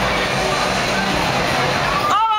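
Loud, steady din of music and crowd voices around a bumper-car ride, with no single sound standing out.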